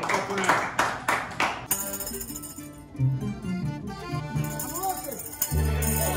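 Hand clapping at about four claps a second, cutting off after about a second and a half. Then an estudiantina plays: accordion chords held under plucked string instruments, with a tambourine, the chords growing loud near the end.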